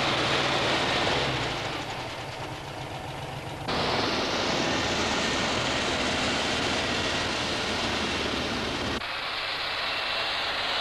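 Snowcat tracked snow vehicle driving over snow with its engine running. The sound cuts abruptly to a steadier, hissier noise about four seconds in, and changes again near the end.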